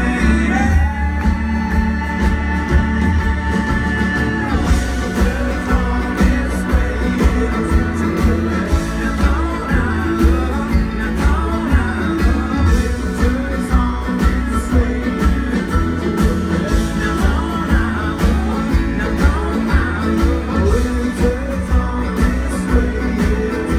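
Live folk-rock band playing an instrumental passage on banjo, acoustic guitar, upright bass, cello, fiddle, piano and drums, over a steady beat of about two thumps a second. A long note is held for the first four seconds.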